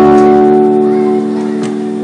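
A strummed acoustic guitar chord ringing on and slowly dying away.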